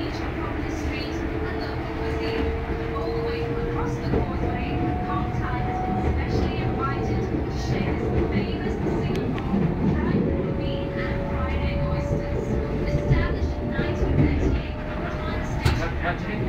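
Inside a moving KLIA Ekspres electric airport train: a steady low rumble of the train running on the rails, with a thin whine that holds one pitch and then shifts to another a couple of times.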